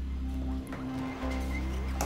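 VCV Rack software modular synthesizer patch playing: two long, low bass notes over a steady drone, with a short rising glide near the end.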